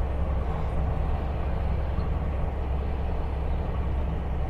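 Heavy truck's diesel engine running steadily under load while climbing a mountain grade, with a constant low drone and road noise.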